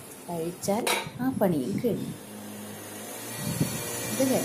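A woman's voice speaking, with one sharp clink of steel kitchenware about a second in, then a low steady hum for about a second.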